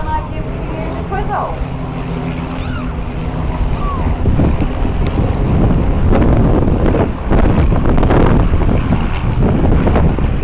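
Formation of display jets passing overhead: a loud rumbling engine roar that swells about four seconds in, with wind buffeting the microphone.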